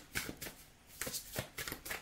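A quick run of light, irregular clicks and rattles, several a second.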